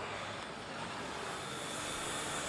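Steady, even background noise of a construction site, a rushing hiss without any distinct knocks, engines or voices standing out.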